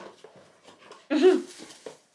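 A short vocal sound about a second in, rising then falling in pitch, over faint rustling and crinkling of a parcel's packaging being unwrapped.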